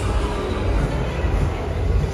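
Shopping-mall interior ambience: a steady low rumble under a wash of background noise.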